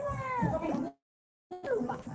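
A drawn-out, wavering pitched call heard through video-call audio, which cuts out completely for about half a second about a second in, then returns.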